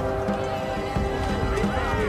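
Background score of steady held notes. About three-quarters of the way in, a horse whinnies with a wavering, rising-and-falling cry.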